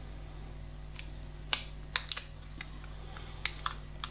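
Scattered light clicks and crinkles of a paper nail sculpting form being handled, over a steady low hum.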